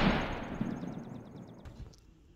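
Fading reverberant tail of a single gunshot-like boom, dying away steadily over the two seconds, with a faint rapid ticking high in the treble about halfway through.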